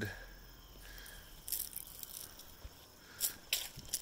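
Faint outdoor hiss with a few soft, short crackles, about halfway through and again near the end.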